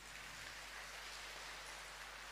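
Faint steady hiss of background noise, even and without any pitch or rhythm.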